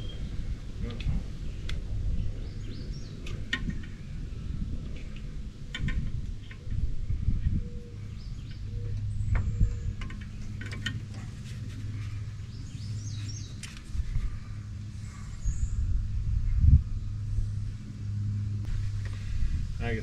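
Scattered small clicks and rustles of hands working the new mirror's wiring inside an open truck door: connectors being plugged together and the wires zip-tied to keep them clear of the window regulator. A low steady hum runs underneath.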